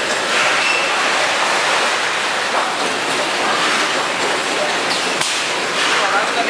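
Edible oil packaging line running: a conveyor carries plastic bottles through the machine with a loud, steady mechanical noise and an occasional sharp click.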